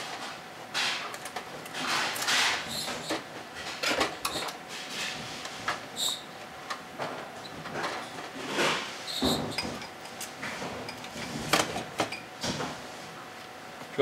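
Hot-swap tape drive being unfastened and slid out of the back of an IBM TS3100 tape library: scattered metal clicks and knocks with several short scraping slides.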